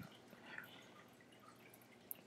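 Near silence: faint room tone in a pause between speech.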